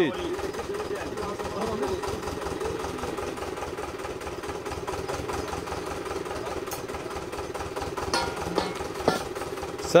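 Stationary engine of a water-well drilling rig running steadily with an even, rapid pulsing beat. A few short knocks come near the end.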